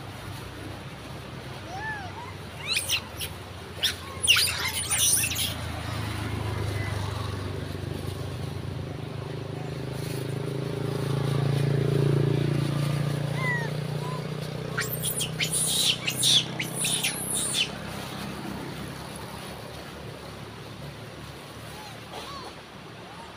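Wild long-tailed macaques giving short shrill squeals in two clusters, a few seconds in and again about two-thirds of the way through. Under them a passing vehicle's low rumble swells in the middle and fades.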